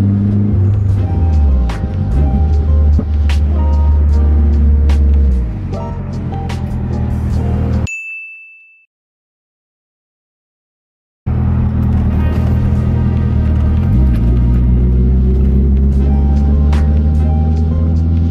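Background chill music with short keyboard notes and a light beat, laid over the low drone of the SR20DET turbo four-cylinder heard from inside the car, its pitch dipping briefly as the revs drop. Partway through, the sound fades out to silence for about three seconds, then cuts back in.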